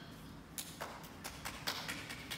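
A few people clapping, starting about half a second in as scattered, irregular claps several a second.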